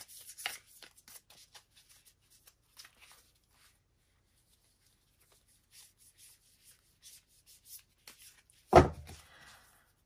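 Oracle cards being shuffled and handled by hand: faint, scattered papery rustles and slides that stop for a couple of seconds midway. One brief, louder sound comes near the end.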